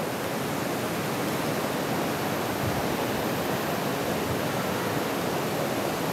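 Steady, even hiss with no distinct events in it.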